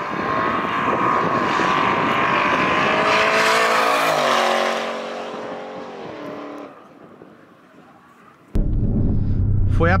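Porsche Panamera Turbo S E-Hybrid's twin-turbo V8 at full acceleration, heard from beside the runway: the engine note climbs, then drops in pitch and fades as the car runs away from the microphone. Near the end, a steady low rumble of the car heard from inside the cabin.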